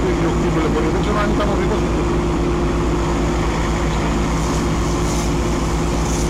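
A fire engine's heavy engine running at a steady speed, a constant drone with a low, even pulse.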